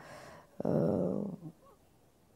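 A single short, breathy sound from a person, like a sigh or exhale with a faint voiced hum under it, starting just over half a second in and lasting under a second.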